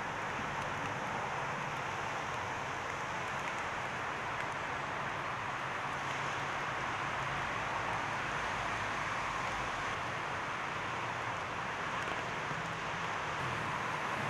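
Steady outdoor background noise, an even rush with no distinct events and a faint low hum underneath.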